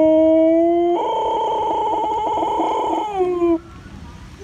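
Husky howling: one long howl that rises slowly in pitch, turns rougher and fuller about a second in, then slides down and breaks off shortly before the end.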